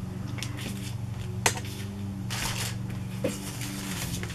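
Fabric scraps being gathered and handled: soft rustling and light taps, with a sharp click about one and a half seconds in and a short burst of rustling a little after two seconds, over a steady low hum.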